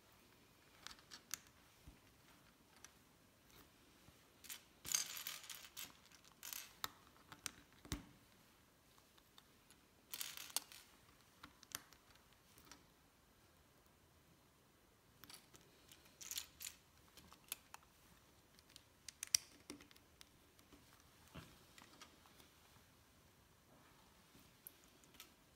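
Faint scattered clicks and rattles of plastic LEGO pieces being picked from a loose pile and pressed together, with a few short bursts of rummaging through the pieces.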